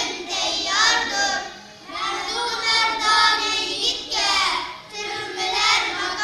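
A group of young boys singing together, in sung phrases broken by short pauses for breath.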